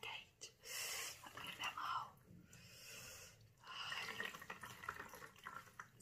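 A towel soaked in hot water being wrung out by hand, with water faintly dripping and trickling off it in two spells.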